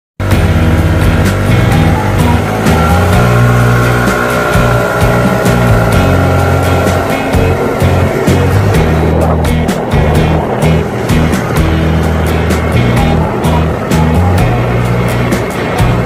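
Loud intro music with a heavy bass line stepping from note to note, a rising glide about two to four seconds in, and a steady beat of sharp clicks from about eight seconds on.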